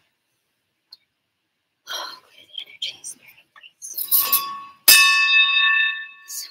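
A brass bell struck once about five seconds in, ringing on with several clear, steady tones that slowly fade. Before it come soft whispers and rustling.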